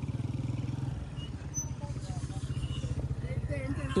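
Motorcycle engine idling with a steady, rapid low putter.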